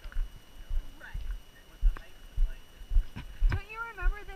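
Hiker's footsteps on a gravel trail, a regular thump about twice a second, with a person's voice starting near the end.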